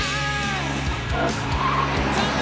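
BMW M3 coupé driven hard on a track with tyres squealing, mixed with guitar-driven background music.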